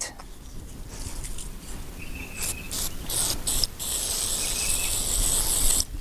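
Aerosol CA glue activator sprayed onto a glued wooden stair-cover piece. A few short hissing spurts come about two and a half seconds in, then a longer hiss near the end. The can is about out.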